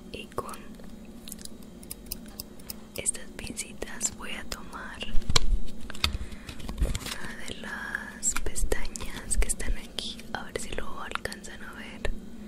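Soft whispering mixed with sharp clicks and crinkles from a plastic false-eyelash tray being handled close to a binaural microphone, with a few heavy low thumps about halfway through.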